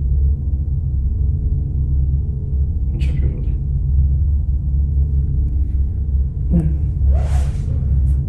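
A loud, steady low rumbling drone with a buzzing hum. Brief soft hissing noises come in about three seconds in and again near the end.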